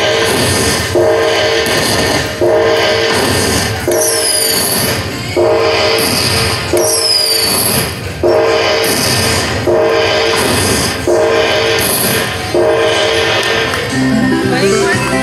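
Aristocrat Panda Magic Dragon Link slot machine counting up its bonus win: a horn-like chord sounds about every second and a half as each prize is added to the winner meter, about ten times in all, with a couple of high falling sweeps midway.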